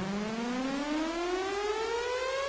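A siren-like electronic rising sweep in a pop song's instrumental break: one pitched tone with overtones gliding steadily upward, building toward the next section of the song.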